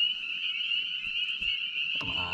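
A chorus of frogs calling from the pond, a steady high-pitched chorus that never breaks.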